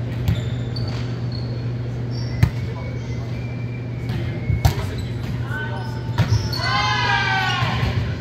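A volleyball bouncing and striking the hardwood floor of a large gym: several separate thuds a second or two apart, echoing, over a steady low hum. Voices are heard throughout, with a loud call near the end.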